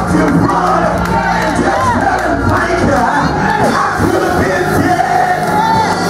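A preacher's voice shouting at the microphone over music with steady held tones, several other voices calling out at once.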